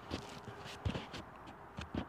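Handling noise picked up by a Rode Wireless GO II transmitter hidden inside a cap under a furry windscreen, as the cap is pulled on and adjusted by hand: rustling with three short knocks, one near the start, one about a second in and one near the end.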